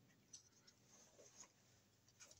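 Near silence, with a few faint small clicks and scratches: hands handling a plastic thermostat subbase and thin thermostat wires.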